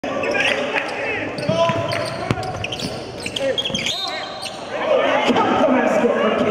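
Live gym sound of a basketball game: a ball bouncing on the hardwood and sneakers squeaking, with players' and spectators' voices echoing in a large hall.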